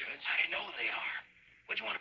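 Speech only: spoken dialogue, with a brief pause a little past halfway.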